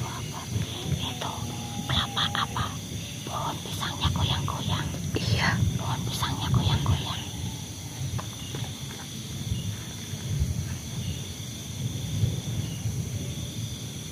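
Night insects trilling steadily in a high, even chorus, over irregular crackling and rustling of undergrowth being pushed through and struck, with low rumbling handling noise on the microphone.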